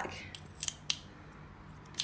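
Stainless-steel surgical instruments clicking: a drill guide shaft is being fitted into the slide-back quick-connect handle of a cervical plating instrument set, giving a few sharp metallic clicks in the first second.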